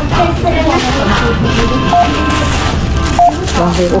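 Two short electronic beeps from a supermarket checkout, about a second and a quarter apart, over steady background music and voices.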